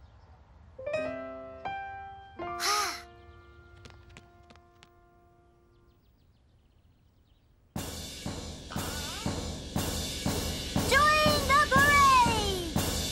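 A short, downcast musical cue of a few held notes and a sigh, then a few seconds of near quiet. About eight seconds in, loud, regular strikes on a toy bass drum with padded mallets start, under two a second, with music playing over them.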